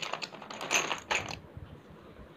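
Small plastic letter tiles clicking and rattling against one another as a hand picks through them: a quick run of clicks over the first second and a half, then they stop.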